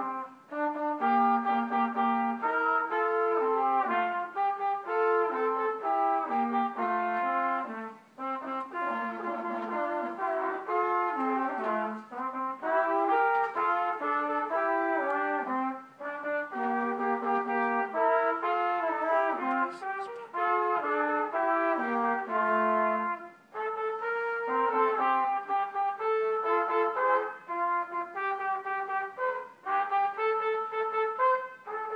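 Two trumpets playing a duet, two melodic lines moving together in separate parts, with short pauses between phrases.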